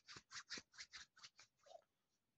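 Fingernails tapping lightly and quickly on a clear plastic box, a faint run of about four or five crisp ticks a second.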